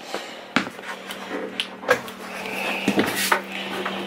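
Pop-out wooden end cabinet of a travel trailer's kitchen island being pulled open: a few light clicks and knocks, busiest around three seconds in.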